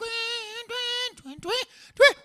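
A man's voice imitating Scottish bagpipes: two held notes at the same pitch, each about half a second, then two short upward swoops near the end.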